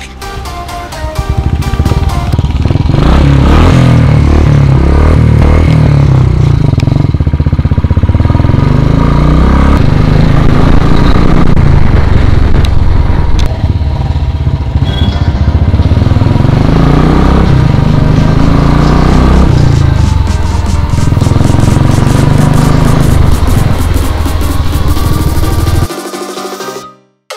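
Royal Enfield Classic 350's single-cylinder engine through an aftermarket exhaust, loud, revving up through the gears in repeated rising and falling sweeps of pitch as the motorcycle pulls away and rides. Music plays over it.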